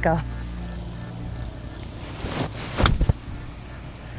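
Golf club striking a ball off the tee: a short swish, then a sharp hit about three seconds in, over a low steady background hum.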